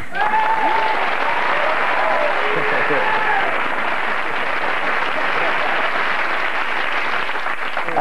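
Studio audience applauding steadily, with a few voices cheering and whooping over it in the first three seconds or so.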